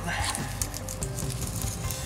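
Soft crackly rustling and scraping of a nylon strap being pulled around and threaded through on a hiking pole's foam grip, under quiet background music.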